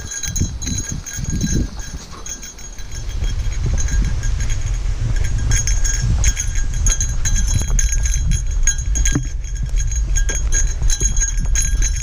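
Small bear bell jingling in a quick, uneven rhythm with the hiker's steps, over a steady low rumble of wind and movement on the microphone that grows louder a few seconds in.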